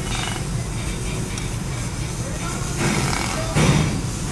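Metal tongs setting boiled octopus tentacles into a frying pan over a steady low kitchen rumble, with a short clatter near the end.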